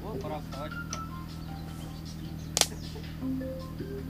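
Quiet outdoor camp background with faint distant voices and a steady low hum, broken by one sharp click about two and a half seconds in.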